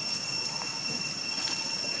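Steady high-pitched insect drone, one held tone with a fainter one above it, unbroken throughout.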